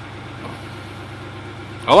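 Car engine idling steadily, running on a newly replaced fuel pump.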